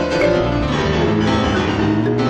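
Jazz trio playing: sampled piano notes over a low bass line, with mallet percussion and drums. The notes overlap densely and the playing is steady and loud.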